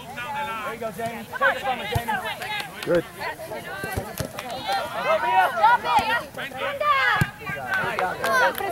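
Indistinct shouting from several girls' voices on the field and sideline, overlapping throughout, with a few sharp thumps of a soccer ball being kicked, one about four seconds in.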